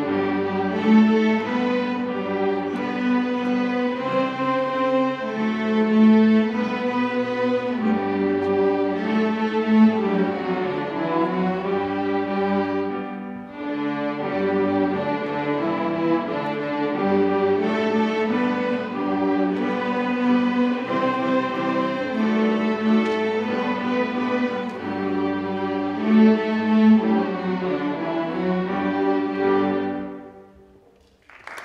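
Beginning student string orchestra of violins, violas, cellos and double bass playing a simple tune in long bowed notes. The music breaks off briefly about halfway through, resumes, and ends at the close.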